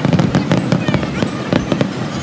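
Aerial fireworks bursting: a loud bang at the start, then a rapid scatter of sharp pops and crackles for about two seconds.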